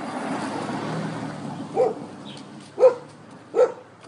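An SUV drives past close by, its tyre and engine noise swelling and fading over the first two seconds. Then a dog barks three times, short sharp barks about a second apart, the last two the loudest.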